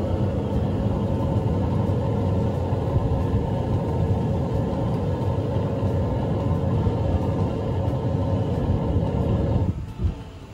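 Simulated space shuttle launch: a recorded rocket rumble played by the LEGO shuttle model display after its countdown, loud and steady, stopping abruptly near the end.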